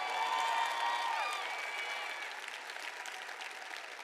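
Audience applauding, the applause fading over the few seconds, with a few voices calling out from the crowd in the first second or two.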